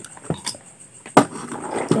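A few light clicks, then a sharp knock about a second in followed by a short rustle: makeup items being handled and set down as she reaches for the next one.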